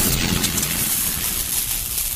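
Title-card sound effect: a rushing noise with a deep rumble underneath, fading slowly.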